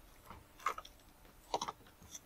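A few light clicks and taps from handling tools against an aluminum railing: a square being set against the rail and a cordless circular saw being picked up, with the clearest taps near the middle and a short cluster near the end.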